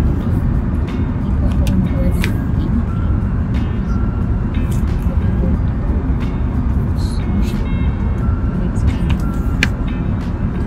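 Steady low rumble of an Airbus A380 passenger cabin: engine and air-conditioning noise.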